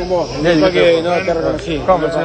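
Indistinct voices talking, no clear words.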